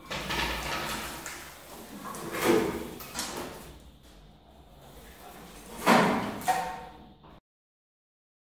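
Stripped Austin-Healey 3000 body shell being turned on a wooden rotisserie: a low rumble with creaking and scraping as it rotates, and two loud clunks, about two and a half and six seconds in. The sound cuts off abruptly shortly before the end.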